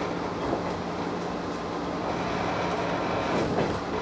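Running noise of a 115 series electric train heard from its driver's cab. The wheels rumble steadily on the rail, with light clicks over rail joints and a steady low hum underneath.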